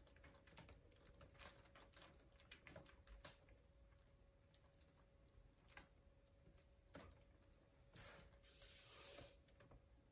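Near silence: faint, irregular clicks and ticks from a hand-spun cake turntable as it rotates and comes to rest, over a faint steady hum. A brief hiss comes about eight and a half seconds in.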